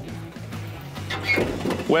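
Background music, with a caravan's slide-out kitchen being pulled out on its drawer runners.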